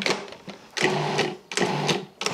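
Cuisinart food processor pulsed three times, its motor whirring in short bursts of about half a second each, coarsely chopping white mushrooms.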